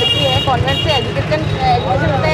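A woman talking in Hindi over a steady low rumble of vehicle and street noise. A high, steady electronic tone runs under her voice and stops about a second in.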